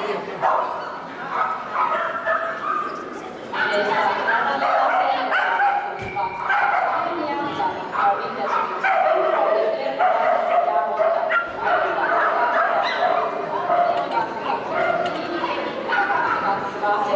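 A dog barking and yipping over and over, short high calls that keep coming throughout, with a person's voice among them.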